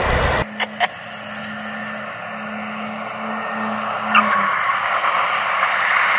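Twin propeller engines of the Altius-U heavy drone running over the runway, a steady engine drone that grows gradually louder, with a low steady hum under it that stops about four seconds in.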